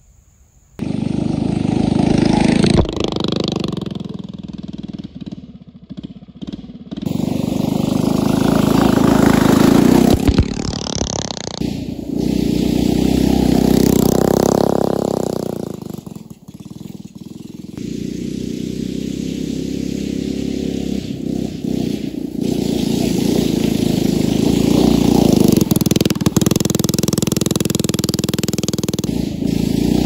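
A 79cc Predator single-cylinder four-stroke engine powering a Power Wheels Jeep, starting loud about a second in and revving up and down as the Jeep is driven around, its loudness swelling and dipping as it comes near and moves away.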